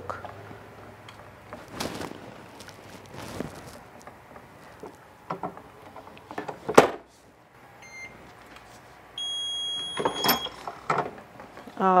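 Heat press in use: a few clunks, the loudest about seven seconds in, then the press's electronic timer beeping, first a short faint beep and then a steady high beep lasting over a second.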